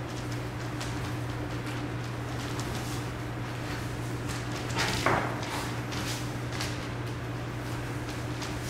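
Dance shoes stepping, sliding and scuffing on a wooden studio floor in scattered short taps and scrapes, with a louder scrape about five seconds in, over a steady low hum.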